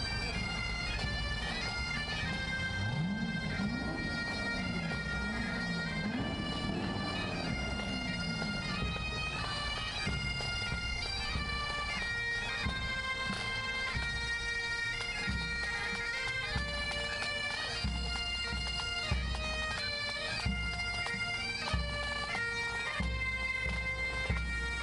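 Highland bagpipes of a pipe band playing a marching tune over their steady drones. In the second half a bass drum beats about once a second.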